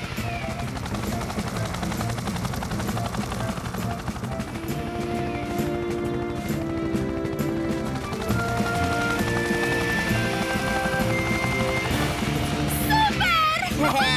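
Helicopter rotor chopping steadily while hovering, with background music of held notes layered over it. High voices exclaim near the end.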